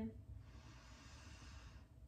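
A woman's slow, deliberate in-breath, a soft steady hiss of air lasting about a second and a half: the guided inhale of a calming breathing exercise.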